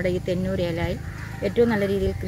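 A woman's voice speaking.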